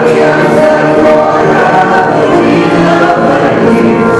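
A congregation singing a hymn together, many voices holding long notes in unison.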